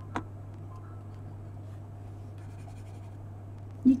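A single sharp click just after the start, likely a computer mouse click, over a steady low hum. Faint scattered ticks and scratches follow.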